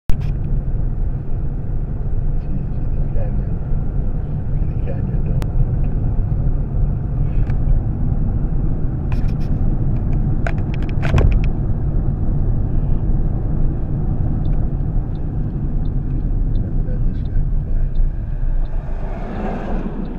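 Car road noise heard from inside the cabin while driving: a steady low rumble of tyres and engine, with a few short clicks and knocks about halfway through.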